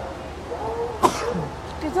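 A person sneezes once, sharply, about a second in, between bits of voice.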